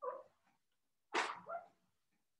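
A dog barking faintly twice, two short barks about a second apart, the second louder.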